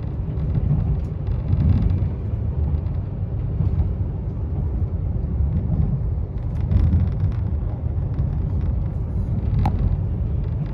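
Steady low rumble of a passenger train running along the line, heard from inside the carriage, swelling and easing every second or two; a single short sharp click near the end.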